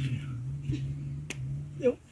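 A single sharp click of a rock knocking against another rock as stones are set around the base of a staked seedling, with a fainter knock before it, over a low steady hum.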